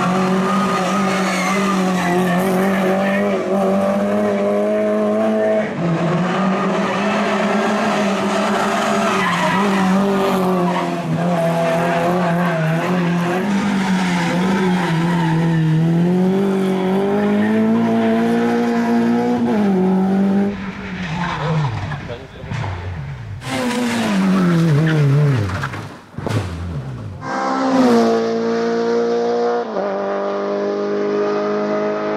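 Renault Clio rally car engine running hard at high revs, its pitch rising and falling with throttle and gear changes, with several falling glides in the second half as it comes off the throttle and a climb again near the end.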